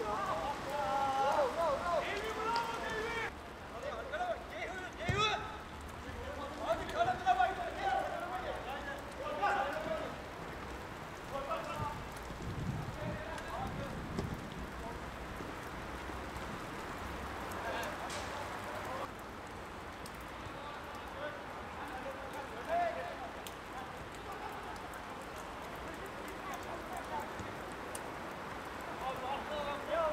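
Players' shouts and calls across a football pitch during play, loudest and most frequent in the first ten seconds, over a steady hiss of background noise.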